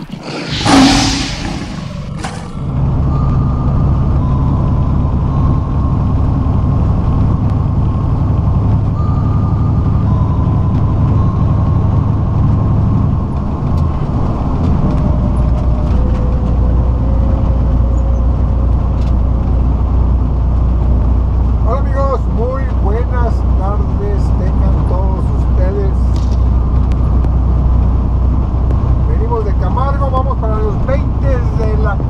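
A short whoosh-and-boom intro effect about a second in, then a semi truck's diesel engine running steadily at highway speed, heard from inside the cab. Around 14 seconds in the engine note drops to a lower pitch.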